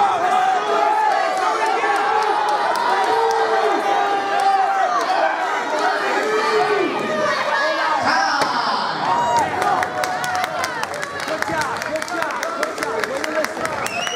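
Crowd of spectators and cornermen shouting and yelling over one another at a cage fight. In the second half, a quick run of sharp clicks joins the voices.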